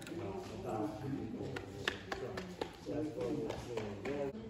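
Indistinct voices talking in a hard-floored room, with a few short sharp taps around the middle.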